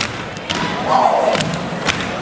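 A step team's stomps and hand claps: four sharp strikes over a noisy crowd, with a shout swelling up in the middle.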